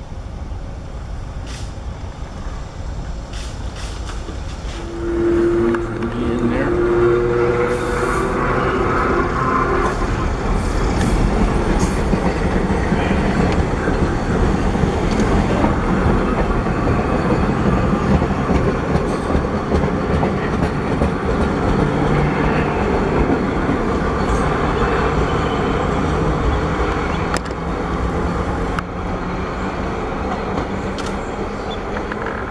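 Vintage 1920s subway train of BMT Standard and D-type Triplex cars running past on the tracks: a steady rumble of wheels on rail that gets louder about five seconds in as the train comes close, with a few seconds of held tone soon after.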